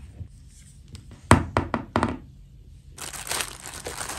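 A quick run of sharp knocks as a hard plastic doll is set down on a tabletop, then, about three seconds in, a clear plastic bag crinkling steadily as it is handled.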